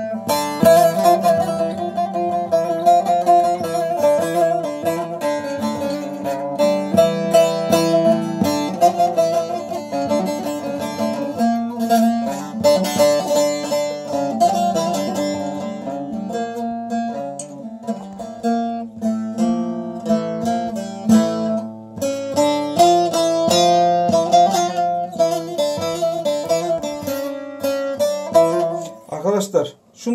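Bağlama (saz) played alone: a melody in the hicaz makam, picked in quick separate notes over a steady low note. It stops just before the end.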